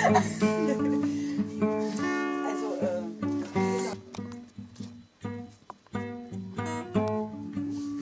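Background music: an acoustic guitar playing plucked and strummed notes.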